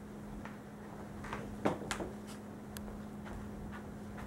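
Scattered light clicks and taps, the loudest about a second and a half in, as a man gets up off a couch and a dog shifts about on the cushions, over a steady low hum.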